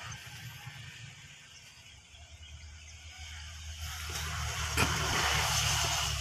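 Low, steady engine hum, growing louder in the second half, with a single brief click about a second before the end.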